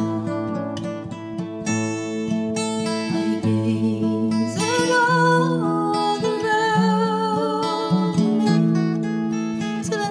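A woman singing a folk song with vibrato to her own strummed, capoed acoustic guitar. The guitar plays alone at first and her voice comes in about halfway.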